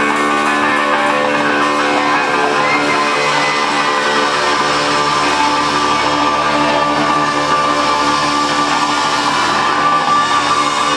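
Electric guitar played live through a club PA, sustained ringing chords at a steady level, the instrumental opening of a song before any singing.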